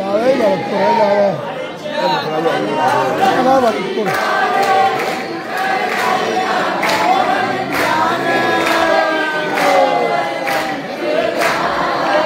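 A crowd of devotees singing a devotional chant together, many voices overlapping. From about four seconds in, sharp strikes repeat roughly once a second.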